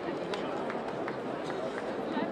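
Indistinct voices over steady outdoor street background noise, with a few faint clicks.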